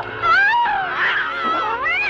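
Cats yowling and screeching, several overlapping wailing calls sliding up and down in pitch, over a low steady drone.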